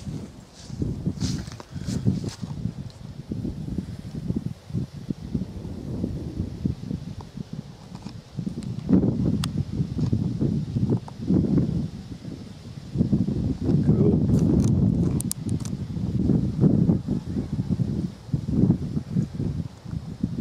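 Wind buffeting the camera microphone outdoors, an uneven low rumble that swells and drops, with some rustling of grass.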